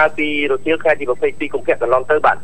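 Continuous speech only: a news narrator's voice-over, with no other sound standing out.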